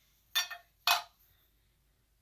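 Two short knocks, about half a second apart, as a glass candle jar is handled and turned over in the hands.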